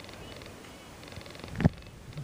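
Faint, low rustling and handling noise as plastic toy figures are moved about inside a metal bowl, with one brief sharp sound about one and a half seconds in.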